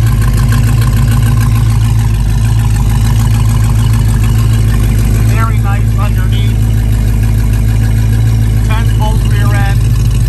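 1967 Chevrolet Camaro's 350 cubic-inch V8 idling steadily through its dual exhaust, heard close to the mufflers under the back of the car.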